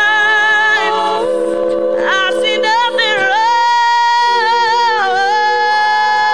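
All-female a cappella group singing without instruments: a lead voice with vibrato over chords held by the other voices, the harmony shifting to new notes a few times.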